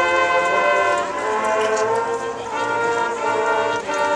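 High school marching band playing, its brass section sounding long held chords that change a few times.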